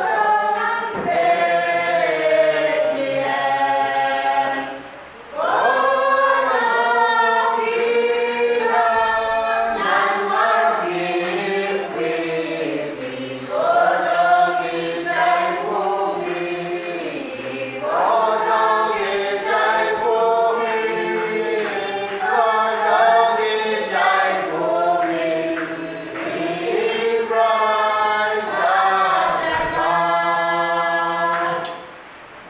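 Church congregation singing a hymn together in long sustained phrases, with a short break between lines about five seconds in.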